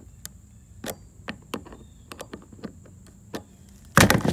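Irregular light clicks and taps, about two or three a second, of hands handling the screwed-on plastic fins and kayak hull, with a loud knock right at the end.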